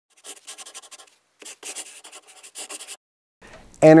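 Rapid scratchy strokes, like scribbling, in two bursts: one of about a second, then a longer one after a short gap. A man's voice begins right at the end.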